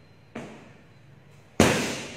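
Two sharp cracks with a ringing echo in a large hall; the second, about a second and a quarter after the first, is much louder.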